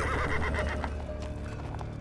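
A horse whinnies for the first second or so, with hooves clip-clopping, over a steady low music drone.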